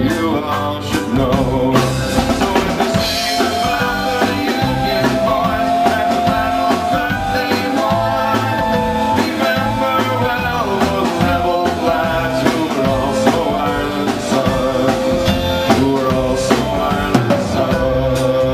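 Irish folk-rock band playing live: acoustic guitar, mandolin, tin whistle, bass and drum kit with a steady beat, the melody carrying between the sung verses.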